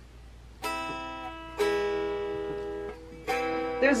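Electric guitar, missing a string, strummed in three chords, each left to ring and fade, about a second or more apart.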